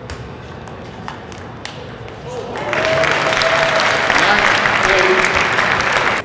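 Table tennis ball struck about three times in a rally, sharp pings. Then, about two and a half seconds in, the crowd breaks into loud applause with shouting voices as the point ends.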